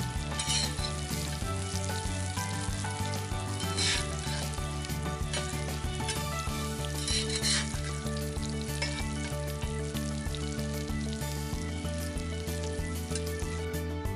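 Coated fish pieces shallow-frying in hot oil on a tawa, a steady sizzle. It swells louder three times as a metal spatula stirs and turns the pieces.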